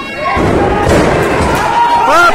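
A wrestler slammed down onto the canvas-covered boards of a wrestling ring: a heavy thud and rumble shortly after the start, with crowd voices around it and a shout rising near the end.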